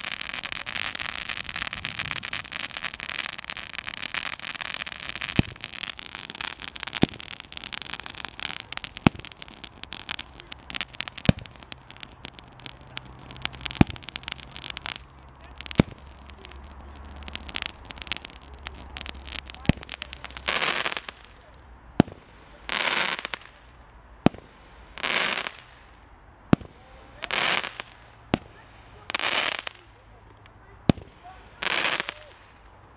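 Standard Fireworks Glitter Glory and Golden Glory ground mines going off. For roughly the first ten seconds there is a dense crackling fizz, broken by sharp cracks every second or two. Later comes a run of short hissing bursts about every two seconds, alternating with sharp cracks.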